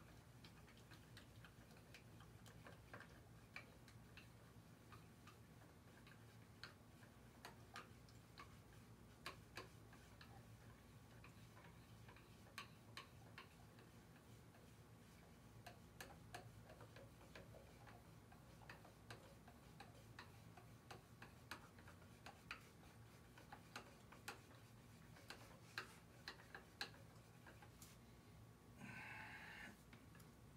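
Faint, irregular clicks and taps of a stick stirring paint in a small tin, knocking against its sides, over a low steady hum.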